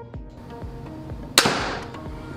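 A single sharp crack about one and a half seconds in, fading quickly: a TenPoint Vapor RS470 reverse-draw crossbow firing a bolt through a chronograph. Background music with a steady beat plays throughout.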